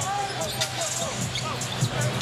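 A basketball being dribbled on a hardwood arena court, with voices in the background.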